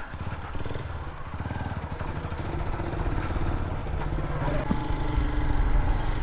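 Motorcycle engine running as the bike is ridden, growing a little louder toward the end.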